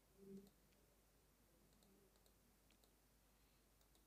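Near silence, with a few faint computer mouse clicks.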